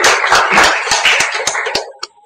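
A small audience applauding in a room: a dense patter of many hands clapping that dies away shortly before the end.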